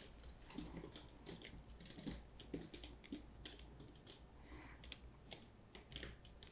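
Faint, irregular small ticks and clicks, a few a second, as a wet acrylic pour painting on canvas is held and tilted by gloved hands; otherwise near silence.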